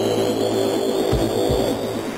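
Minimal techno in a DJ mix: a dense, noisy swell with a slowly rising high tone over a repeating pulse, and two deep kick thumps a little past a second in.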